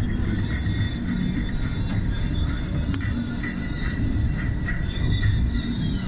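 Steady road and engine rumble heard from inside a moving car, with one sharp click about halfway through.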